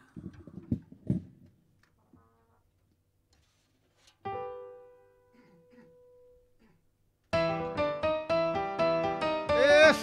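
A single electric keyboard note rings out and slowly fades. About three seconds later a live band starts the song abruptly with loud, fast, evenly repeated keyboard chords.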